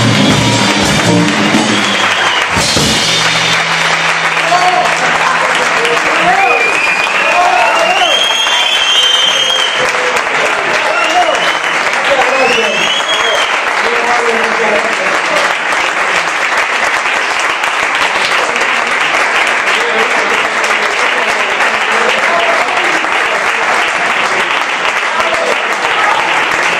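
The jazz trio's electric guitar, double bass and drums play their closing notes, ending about three seconds in. The audience then applauds through the rest, with cheers and whistles for several seconds soon after.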